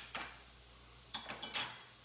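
Sharp metal clicks and taps of a kitchen knife and garlic press against a plastic cutting board while garlic is worked: one click just after the start, then a quick run of four about a second in.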